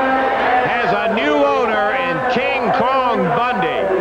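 A man's voice talking loudly throughout, the words not made out: speech, most likely match commentary.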